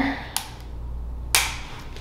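Handling knocks as a mirror is picked up and set in place: a light click about a third of a second in, then a sharper, louder knock about a second later, over a steady low hum.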